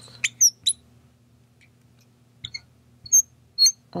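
Marker squeaking on a glass lightboard while writing: short, high squeaks, one for each pen stroke, in a quick cluster near the start, a pair midway and a few more near the end.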